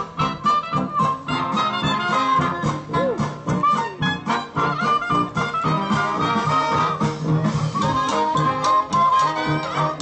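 Live 1920s-style jazz orchestra playing an instrumental passage of a dance tune, with a steady beat.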